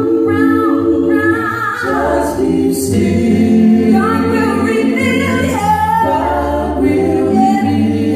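A small mixed gospel vocal group singing a cappella in close harmony, women's voices on top and men's underneath, holding sustained chords that shift every second or so, sung into handheld microphones.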